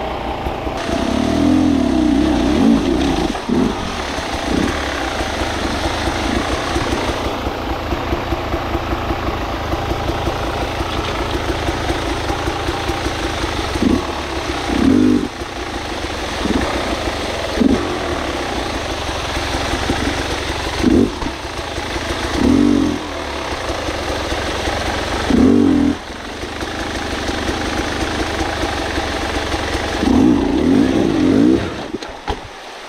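Beta enduro motorcycle engine running at low speed while climbing over wet rock, with short throttle blips every few seconds that rise and fall quickly.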